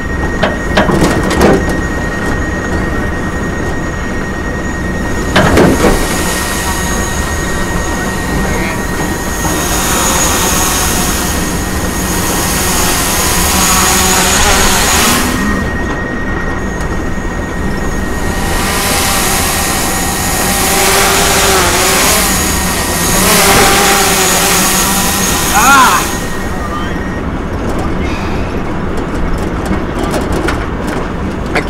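Road noise and wind rush from a pickup truck driving along a road, heard from the open truck bed, with a thin steady high-pitched tone through most of it and a single knock about five seconds in.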